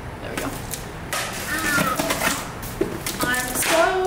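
A woman's voice making short wordless sounds over the rustle and knocks of the camera and a large cardboard package being handled.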